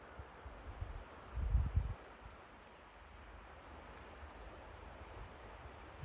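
Outdoor rural ambience: a steady faint hiss, with a brief low rumble of wind on the microphone about a second and a half in. A few faint high bird chirps are scattered through it.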